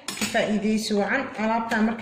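A metal spoon clinking a few times against a ceramic bowl of chia seed gel and oil, with short sharp strikes.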